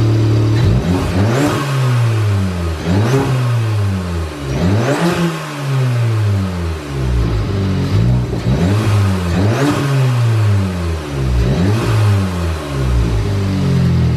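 Audi S3's turbocharged four-cylinder engine idles briefly, then is revved in a series of quick throttle blips, each rising and falling in pitch, about eight in all. The car has an atmospheric-venting diverter valve spacer fitted, which is meant to do away with turbo flutter when the throttle closes.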